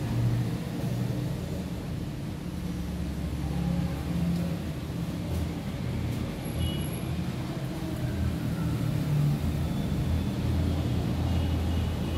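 Steady low rumble that wavers slightly in level, with a few faint, brief high tones.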